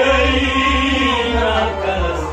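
Kashmiri Sufi song performed live: voices singing a slow melodic line, one note held for about a second, over steady harmonium accompaniment.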